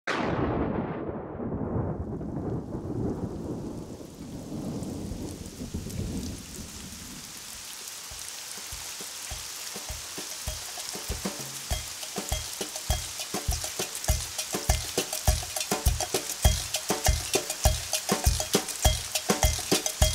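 Recorded thunder rumbling over steady rain, the rumble dying away after about seven seconds. A rhythmic beat then fades in and grows louder while the rain hiss continues.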